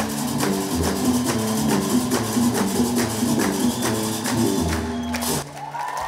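Gnawa music: a guembri plucks a repeating bass line under the steady clacking of qraqeb metal castanets. The music cuts off shortly before the end.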